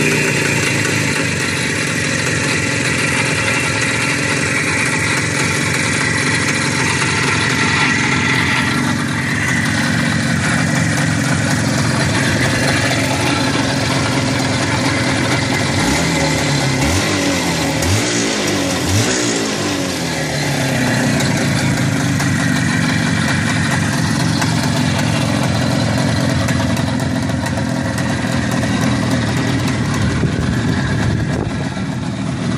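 Izh motorcycle's two-stroke engine idling steadily, blipped up and down a few times about halfway through.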